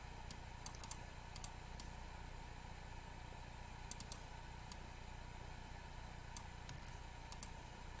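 Faint, scattered clicks of a computer keyboard and mouse, a few at a time with gaps between, over a low steady hum.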